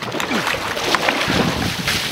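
Hot tub water churning and sloshing, a steady rushing noise.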